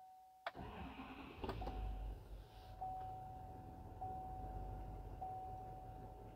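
The 6.6-litre Duramax L5P V8 diesel of a 2020 GMC Sierra 2500 cranks and starts about half a second in, catching right away and settling into a low, steady idle, heard from inside the cab. A single-tone chime dings about once every 1.2 seconds throughout.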